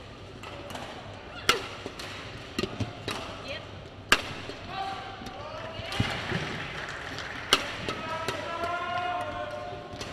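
Badminton rally: four sharp cracks of rackets striking a shuttlecock, spaced about one and a half to two and a half seconds apart, with lighter taps and footfalls between them.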